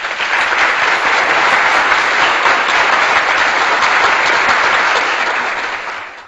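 Audience applauding in a steady round of clapping that fades out near the end.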